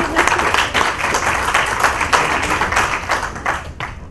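Audience applauding: a dense patter of many hands clapping that stops just before the end.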